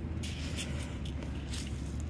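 Faint rustling of a nitrile-gloved hand scooping dry kelp meal, over a steady low hum.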